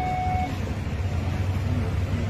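Steady low hum and background noise of a shop interior. A held electronic tone, the lower second note of a falling two-note chime, stops about half a second in.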